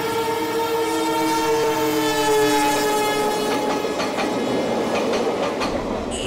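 Train horn sounding one long held chord that sags slightly in pitch and fades out about four seconds in, over the running noise of the train. Wheels clack over rail joints in a steady rhythm in the second half.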